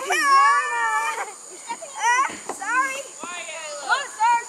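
Children's high-pitched voices yelling and calling out at play: one long drawn-out yell in the first second, then several shorter shouts.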